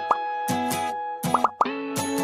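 Bright, cheerful intro jingle music with cartoon pop sound effects, each a quick rising pitch swoop: two right at the start and three in quick succession about a second and a half in.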